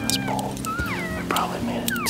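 Several short, high whistled elk calls that slide downward in pitch, one about two-thirds of a second in and another near the end. They are heard over background music with steady low notes.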